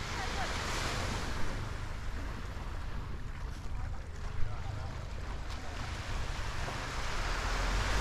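Wind rumbling on the microphone over the wash of small waves on a beach, the hiss swelling near the start and again at the end. Two brief knocks, one about a second and a half in and one about four and a half seconds in.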